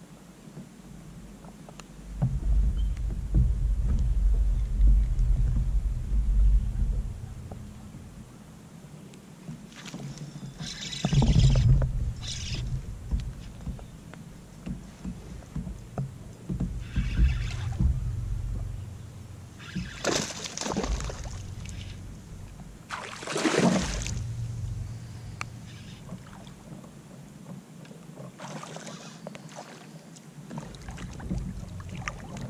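Water splashing and sloshing around a kayak in several short bursts, the later ones from a hooked bass thrashing at the surface next to the boat. A low rumble runs through the first few seconds.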